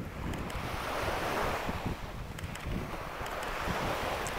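Small waves washing in over the sand at the shoreline, the surf noise swelling twice, with wind rumbling on the microphone.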